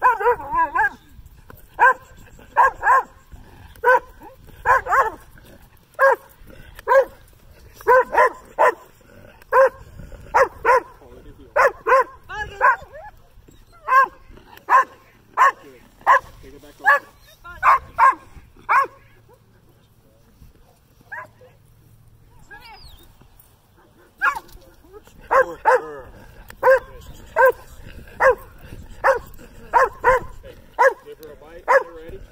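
Dutch Shepherd barking at the helper in protection work: short, regular barks about one a second. The barking stops for a few seconds about two-thirds of the way through, then starts again.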